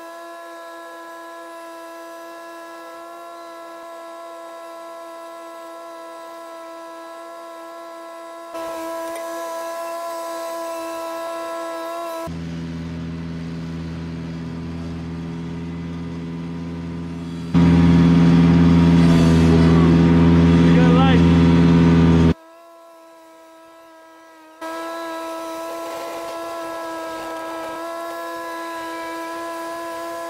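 Ventrac 4500Z compact tractor running with its front mower deck cutting grass and brush, in several clips cut together. A steady high whine comes first, then a deeper, much louder engine sound that is loudest from about 17 to 22 seconds in, then the high whine again near the end.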